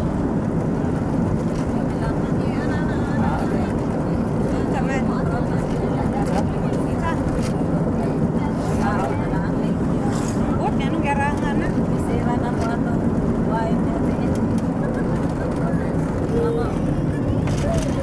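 Steady engine and road rumble heard from inside a moving vehicle, with wind rushing through the open window. Voices can be heard faintly over the noise.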